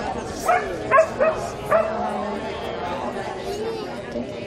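A dog barking, four short barks in the first two seconds, over a murmur of voices.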